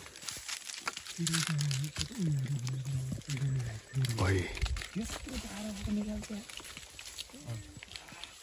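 A man grunting and groaning with effort as he hangs from a branch and hauls himself up into a tree, a run of low, falling strained sounds with a brief rising squeak about four seconds in. Bark and leaves crackle and scrape under his hands and body.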